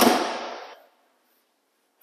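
Door of a classic Aston Martin DBS being shut: one sharp slam, its sound dying away within about a second.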